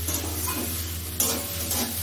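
A metal spatula stirring and scraping food frying in a steel kadai, with a steady sizzle, over a steady low hum. The sharpest scrape of the spatula against the pan comes just past a second in.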